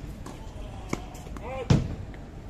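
Tennis ball bounced on a hard court before a serve: two bounces, the second, near the end, louder and fuller than the first.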